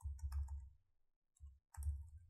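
Keystrokes on a computer keyboard, typed in three short bursts of clicks with a dull thump under each.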